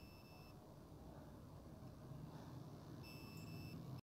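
Two short, faint electronic beeps, one at the very start and a slightly longer one about three seconds in, over a faint low hum.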